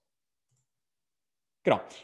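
Dead silence on the call audio for about a second and a half, then a man's voice resumes near the end.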